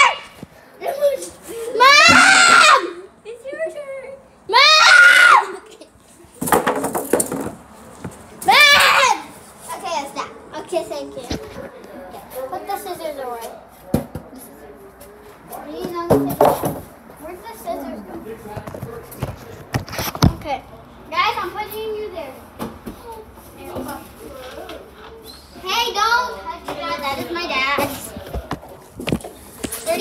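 Children squealing and shrieking in rough play, with several loud, high cries in the first half. A couple of sharp knocks and clatters come in between, and softer chatter follows later.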